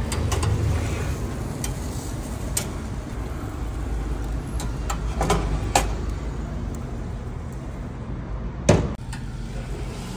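Metal tongs clicking against the steel grill grate of a charcoal oven: a few sharp clinks spread out, the loudest near the end, over a steady low rumble.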